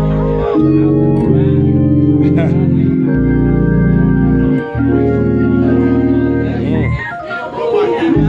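Gospel organ playing on a two-manual console organ: full sustained chords over a low bass, changing every second or two, with a wavering vibrato. Near the end the bass drops out and a quick run climbs upward before the full chords come back.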